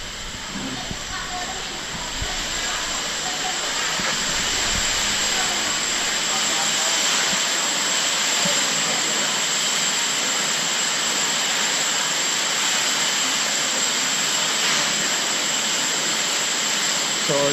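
Stove burners under the cocoon-reeling pots of hot water, giving a steady hiss that grows louder over the first few seconds and then holds.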